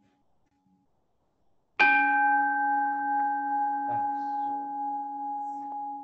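Buddhist bowl bell struck once, about two seconds in, ringing on in a steady tone of several pitches that slowly fades. The strike marks a prostration at the altar.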